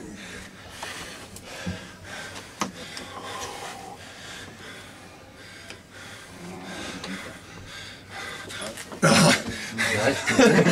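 Heavy breathing and panting of two men straining in an arm-wrestling match, with a few faint clicks. About nine seconds in comes a sudden loud vocal outburst.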